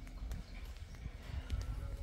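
A few soft footsteps on bare dry dirt, light scuffs and taps, over a low rumble of wind on the microphone.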